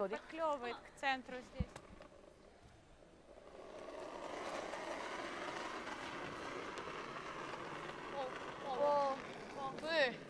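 Short shouted calls and a knock, then a granite curling stone sliding over pebbled ice: a steady hiss that sets in about a third of the way in and holds. Another shouted call comes near the end as the sweepers start brushing.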